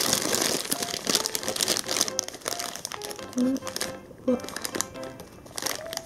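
A plastic bag crinkling as it is handled, loudest in the first two seconds and then in irregular rustles.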